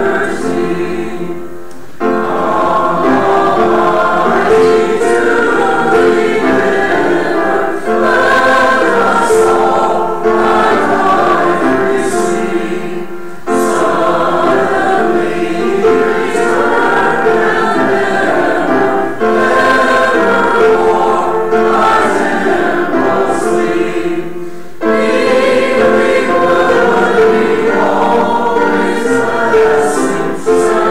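A church congregation and robed choir singing a hymn together, in phrases with short breaks for breath about every ten seconds.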